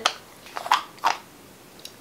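A screw-top cosmetic jar's lid being twisted off by hand: two short scrapes about a second apart, then a faint tick near the end.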